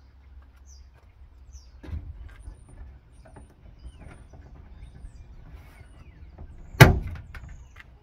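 Plastic tailgate trim panel being pried off by hand with trim removal tools: scattered small clicks and creaks, then one loud sharp crack about seven seconds in as a retaining clip lets go.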